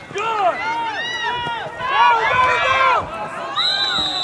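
Spectators shouting and cheering at a youth football play, many voices overlapping. Near the end, a referee's whistle blows a steady high note, ending the play.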